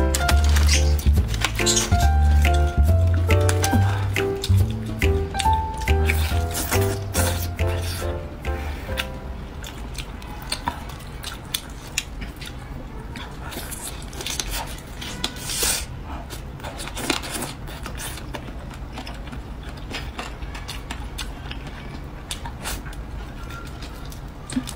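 Background music with a heavy bass beat that fades out about nine seconds in. After it come close-miked sounds of roast chicken being torn apart by hand and chewed, a run of short clicks and crackles.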